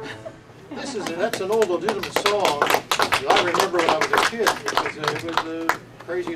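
Audience clapping for a few seconds after a song with electric guitar ends, with several voices talking over the applause.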